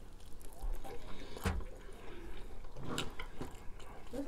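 Close-up eating sounds of a person biting and chewing crispy fried chicken wings, with a few sharp crunches about a second and a half in and again around three seconds.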